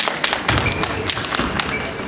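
Table tennis balls striking tables and paddles: many sharp, irregular taps and knocks, with a low thud about half a second in and a couple of brief squeaks.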